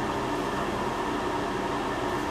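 Steady room noise: an even hiss over a low hum, with nothing starting or stopping.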